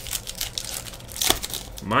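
A trading card pack's wrapper being torn open and crinkled in the hands, a run of crackling rustles that is densest a little after a second in.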